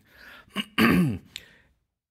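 A man clearing his throat once: a short loud rasp about a second in with a falling pitch at its end, followed by a small click.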